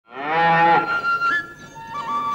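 A single short moo of cattle, loud and low, ending under a second in, with a held high note of background music sounding under and after it.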